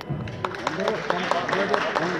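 Several voices in the stands, overlapping, with music mixed in and a few notes held near the end.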